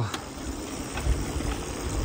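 A bicycle coasting downhill on a paved road: wind rushing over the microphone and the tyres running on the asphalt, as a steady, uneven rushing noise.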